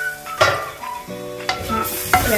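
A few sharp clinks and knocks of cookware as a stainless steel lid comes off and a wooden spoon goes into a clay cooking pot, over background music with held notes.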